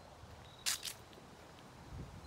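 Two sharp clicks about a fifth of a second apart, a little under a second in, the first the louder: handling noise from a handheld phone as it is swung around.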